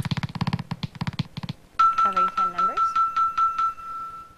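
Game-show electronic sound effects as a new Lingo board is put up. A fast run of clicks stops about a second and a half in, and a steady electronic tone then holds for about two seconds, with a brief voice under it.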